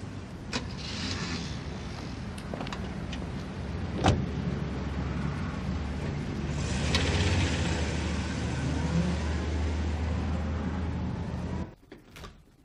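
A car engine running steadily, with one sharp knock about four seconds in and the engine getting louder about halfway through; the sound cuts off suddenly just before the end.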